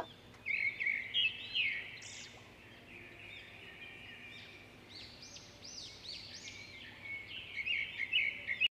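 Songbird chirping and singing: a run of quick, high arched chirps, louder in the first couple of seconds and again near the end.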